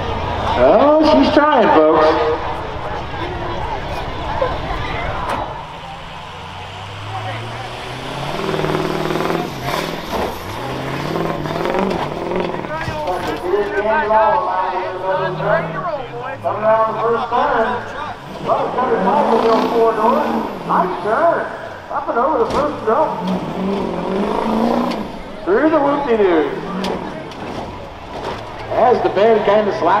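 Rough-course truck engine revving and accelerating, with a rise in pitch a few seconds in, over a steady mix of voices.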